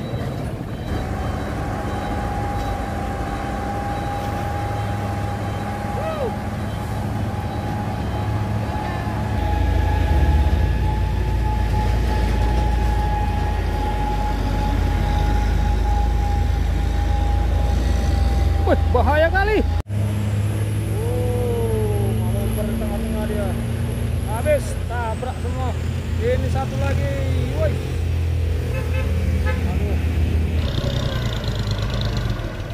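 Heavy diesel trucks labouring up a steep hill, a deep continuous engine rumble that grows louder partway through, with a steady high whine over it for much of the first twenty seconds. After an abrupt break about twenty seconds in, the engines go on and people's voices call out over them.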